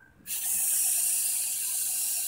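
Aerosol insecticide spray can hissing in one long steady burst, starting a quarter of a second in.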